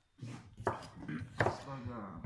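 A man beatboxing with his fist at his mouth: a few sharp percussive mouth hits mixed with voiced sounds, starting after a short pause.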